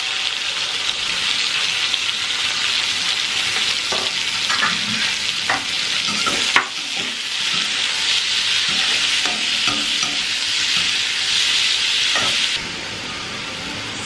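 Chopped onions sizzling in hot oil in a metal kadai, with a spatula scraping and knocking against the pan as they are stirred. There is a sharp knock about six and a half seconds in, and the sizzle drops quieter about a second and a half before the end.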